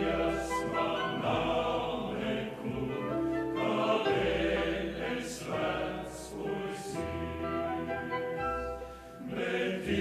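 A choir sings a Latvian song with a symphony orchestra and grand piano: sustained chords over held low bass notes. There is a brief lull between phrases near the end.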